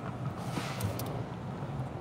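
Inside a car's cabin, a steady low engine hum as the car creeps slowly into a parking spot, with a few faint clicks about halfway through.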